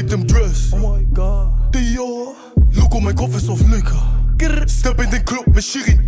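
Hip hop track with rapped vocals over a deep, sustained bass line. The bass drops out briefly about two seconds in, then comes back.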